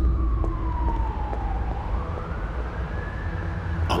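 A siren wail: one gliding tone that slides down, rises again about halfway through and holds, over a steady deep rumble.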